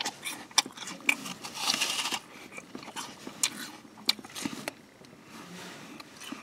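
Someone biting and chewing a crisp apple: a run of short, sharp crunching clicks scattered throughout, with stretches of wet chewing noise between them.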